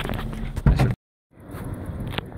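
Handling noise of a phone being taken in hand: rubbing and knocks on the microphone, with a loud thump just before the sound cuts out completely about a second in. After the short gap, faint open-air noise comes back in.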